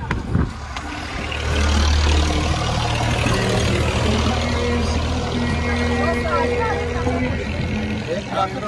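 A large motor vehicle's engine running in a steady low rumble, likely a truck on the road below. It swells about a second and a half in and eases near the end, with people's voices over it.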